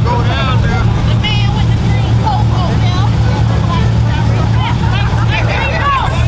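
Deep, steady V8 rumble from performance cars creeping up to the start line, a Chevrolet Camaro ZL1 and an SRT Jeep, held at low revs without any revving. Crowd voices chatter over it.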